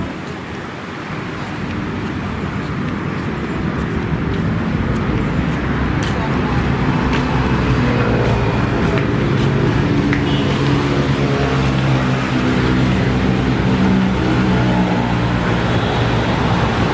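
Road traffic noise from a busy boulevard, building up over the first few seconds. From about halfway it is joined by the steady hum of a vehicle engine.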